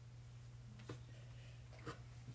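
Near silence: room tone with a steady low hum and two faint short knocks, about a second apart.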